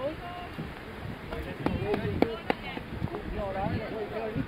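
Indistinct voices of several people talking, with a few sharp knocks in the middle, the loudest a little over two seconds in.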